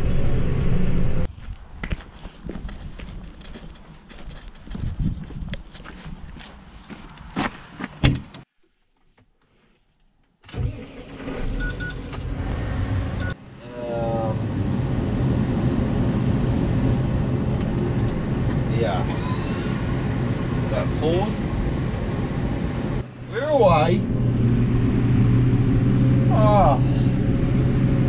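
Tractor cab sounds broken by cuts. First comes clicking and knocking from handling gear in the cab over a quieter background, then about two seconds of near silence. After that a Case Puma 240 CVX's diesel engine runs steadily, heard from inside the cab as a low even hum.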